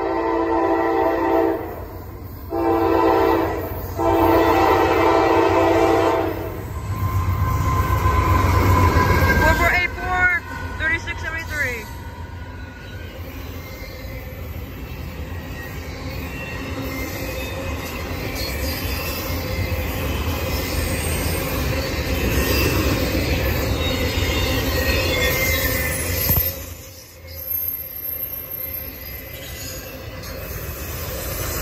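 A Norfolk Southern AC44C6M diesel-electric locomotive's air horn sounds three chords, long, short, long. The locomotive then passes with a loud low rumble about seven seconds in. Brief wheel squeal follows, then the steady rolling of double-stack intermodal container cars going by.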